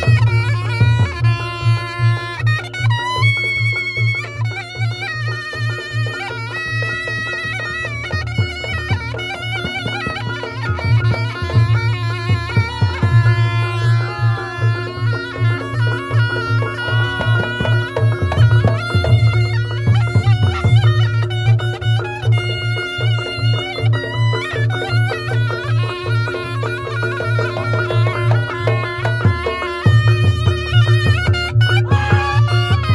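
Live Reog Ponorogo gamelan music: a reedy, wailing shawm-like melody, typical of the slompret, over a constant rhythm of drums and a sustained low tone.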